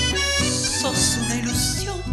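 Live folk music: accordion and electric keyboard playing a short instrumental phrase between a woman's sung lines. Her vibrato-laden voice falls away just as the phrase begins and comes back right after it.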